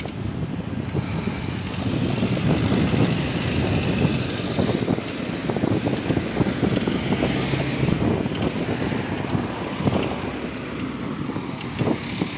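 Wind rushing over the microphone of a camera riding in a moving vehicle, over the steady rumble of road and traffic noise.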